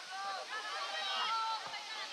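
High-pitched shouts and calls from young footballers on the pitch, several voices overlapping, distant and unintelligible.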